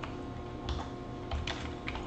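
Computer keyboard being typed on: a handful of separate keystrokes spread irregularly through the moment.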